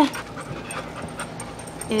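A dog panting quietly, in short quick breaths about four a second.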